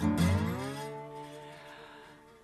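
A guitar chord struck once after silence and left to ring, its notes sliding down in pitch as it starts and then slowly fading.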